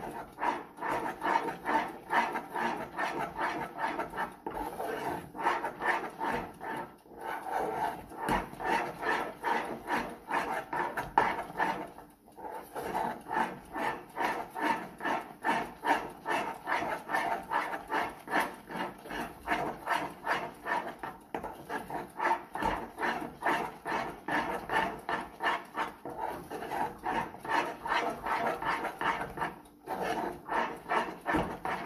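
Metal spoon stirring a thick, sticky paste in a stainless saucepan, a quick, steady rhythm of wet scraping strokes with a short pause about twelve seconds in. The paste has cooked down until it thickens and sticks to the pan's sides and bottom.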